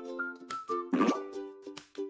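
Light children's background music with held notes, over which several short sound effects mark the on-screen countdown.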